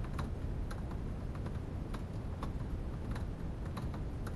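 Typing on a laptop keyboard: irregular key clicks, about three a second, over a low steady rumble.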